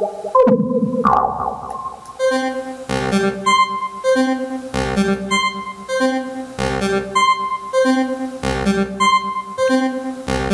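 Tassman 4 software modular synthesizer playing a step-sequenced pattern: a short phrase of pitched synth notes over a low thump, repeating about every two seconds. About half a second in, a louder swell sounds and dies away before the pattern settles in.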